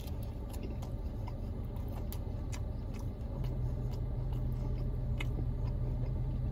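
Chewing a ranch-dipped bite of Papa John's Papadia flatbread: scattered soft mouth clicks over a steady low hum in the car cabin, which grows a little stronger about halfway through.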